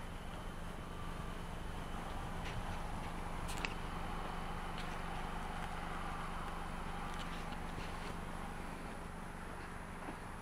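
Outdoor background with a steady low hum, and a few faint clicks and footsteps on pavement from someone walking across the lot.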